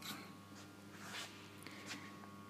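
Faint rustling and scraping of the camera being handled and carried, with a few light ticks, over a steady low electrical hum.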